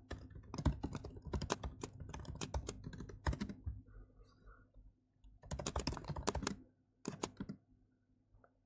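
Typing on a computer keyboard in quick runs of keystrokes. The typing stops for about a second and a half midway, then comes another run and a few last keys near the end.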